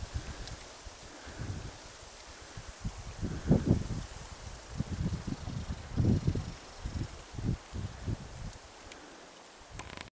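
Wind buffeting the camcorder's microphone in irregular low gusts over a faint steady hiss.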